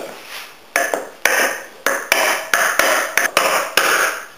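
About ten hammer blows on a wooden block, beginning about a second in and coming quicker towards the end, driving a threaded steel rod through a bored hazel post.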